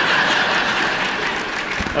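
Audience applauding steadily, easing off slightly near the end.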